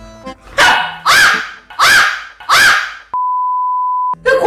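A Shiba Inu barks four sharp times in quick succession, objecting to being sniffed. About three seconds in, a steady test-tone beep starts and holds to the end.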